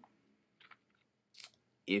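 A short pause in a man's speech, nearly silent but for a few faint lip and mouth clicks, before his voice comes back near the end.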